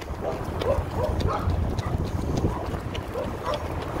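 Steady low rumble of road and wind noise from a slowly moving car, with faint short sounds scattered over it.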